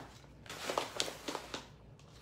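Dried beans poured into a plastic tub, rattling as a quick run of small clicks from about half a second in, dying away after about a second.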